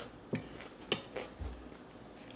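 Eating and handling sounds while picking meat off a turkey neck bone: two sharp clicks about half a second apart, then a soft low thump.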